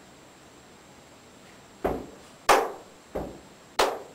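Four evenly spaced drum hits on a drum kit, about two-thirds of a second apart. The first and third hits are deeper and the second and fourth sharper and brighter, with the second the loudest.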